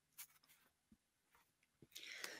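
Near silence: room tone in a pause between speakers, with one faint soft click about a quarter second in.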